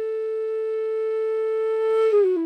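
Background music: a flute holding one long, steady note that grows slightly louder.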